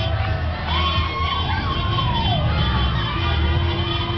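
Crowd of people shouting and cheering in a street, many voices overlapping, over a low rumble of traffic.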